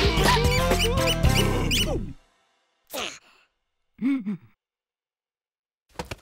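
Fast, busy cartoon music that stops abruptly about two seconds in. About a second later comes a short sound sliding downward in pitch, and a second after that a brief groan-like cartoon voice.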